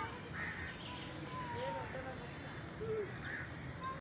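Birds calling: a few harsh, crow-like caws, about half a second in and again near the end, with thin whistled bird notes between them. Faint distant voices sit underneath.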